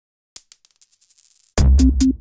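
A sharp click followed by a quickening run of fading ticks with a thin high ring, like a coin dropped and settling. Then, about one and a half seconds in, loud electronic music with a heavy bass beat starts.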